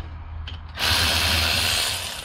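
Milwaukee cordless 3/8-inch electric ratchet backing out a ring gear bolt on a differential carrier. After a lower hum, its motor runs loudly from about three quarters of a second in. The bolt breaks free with little effort.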